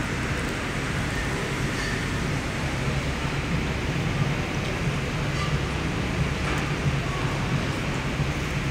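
Steady supermarket ambience: a constant low hum under an even hiss, with faint distant voices.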